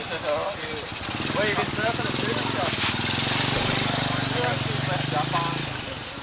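A motor vehicle engine running close by, coming up about a second in, holding a steady note, and stopping just before the end, under the voices.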